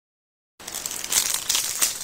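Crinkling and rustling as a crinkly material is handled, starting abruptly about half a second in, with a few sharper crackles around a second in.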